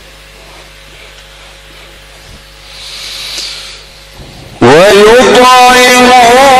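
A low steady hum with a brief hiss of noise near the middle. Then, about four and a half seconds in, a male Quran reciter starts a loud, melodic recitation through the microphone. His voice slides upward and then holds ornamented, wavering notes.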